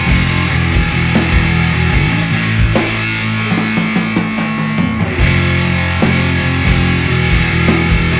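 Instrumental passage of a rock song played on guitar, bass guitar and drums, without singing. The band thins to a sparser part about two seconds in and comes back in full a little after five seconds.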